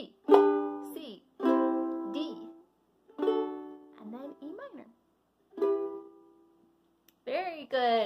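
Ukulele strummed four times as single chords, each left to ring and fade before the next, about one to two seconds apart.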